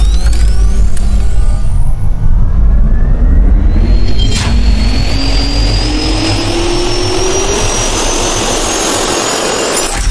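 Jet-engine turbine spooling up, as a sound effect: a heavy low rumble under two whines that climb steadily in pitch, with a sharp click about four and a half seconds in.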